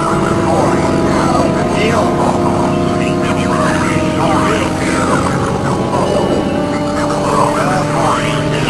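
Dense layered experimental drone mix: several steady tones held together, under a stream of short swooping pitch sweeps that rise and fall.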